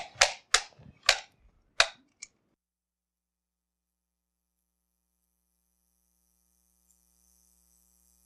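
Microphone handling noise: about five sharp clicks and knocks in the first two seconds. The signal then drops to dead silence, and a faint steady hum and hiss come in about five seconds in. The microphone is not working properly, and low batteries are suspected.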